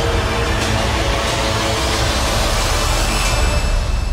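Film-trailer sound design under the title card: a loud, deep rumble with a noisy whoosh that rises toward the end, while held notes of the score fade out in the first second.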